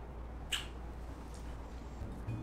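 A short lip smack from a kiss about half a second in, with a fainter tick later, over quiet room tone with a low hum.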